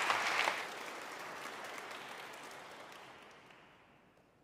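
Congregation applauding in a large stone cathedral: the clapping is loud for about half a second, then thins out and fades away over the next few seconds.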